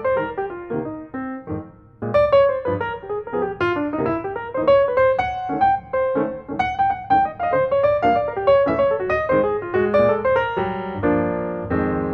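Piano music with quick runs of notes that fall and rise over a low bass; fuller chords come in near the end.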